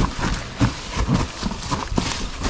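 Mountain bike rolling down a trail covered in dry fallen leaves: tyres crunching through the leaves, with irregular thuds and knocks as the wheels and frame hit roots and rocks, several times a second.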